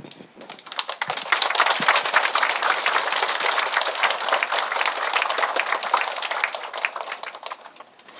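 Audience applauding, many hands clapping at once; it picks up about a second in and thins out toward the end.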